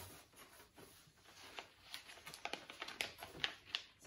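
Faint rustling of copy paper being folded and creased by hand on a tabletop, with scattered small crackles and taps that come more often in the second half.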